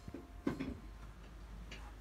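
A soft knock about half a second in, with a few faint clicks around it and a few faint ticks later, over quiet room tone.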